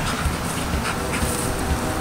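Standard poodle panting, over a steady low background rumble.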